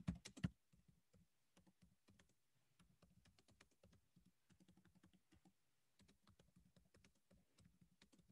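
Faint typing on a computer keyboard: a quick, uneven run of soft key clicks, with a few louder clicks in the first half second.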